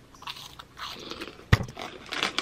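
Close-up crunching of a Cheeto being bitten and chewed, with one sharp thump about one and a half seconds in.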